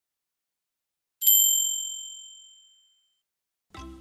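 A single bright, bell-like ding about a second in, ringing on and fading away over about a second and a half.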